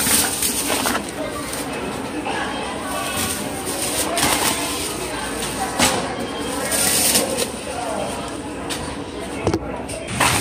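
Busy supermarket checkout ambience: indistinct chatter of other shoppers, with grocery bags rustling and knocking in scattered short bursts as they are lifted from the self-checkout.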